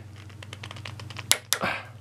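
Click-type torque wrench set to 110 inch-pounds, turned hard by hand: light ticking as it is loaded, then one sharp click a little past halfway as it reaches its set torque and breaks over. A short burst of noise follows just after the click.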